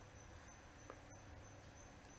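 Near silence: faint room tone with a thin, steady, high-pitched whine.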